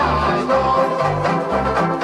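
A group of banjo ukuleles strummed together in a bouncy rhythm, with a man singing a melody over them and a bass line moving beneath.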